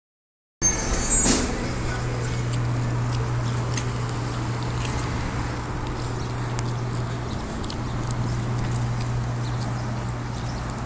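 A steady low hum under outdoor street noise, with scattered light clicks and knocks.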